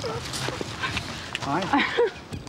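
Excited women's voices at a surprise reunion hug: breathy laughter and a greeting of "hi" about one and a half seconds in.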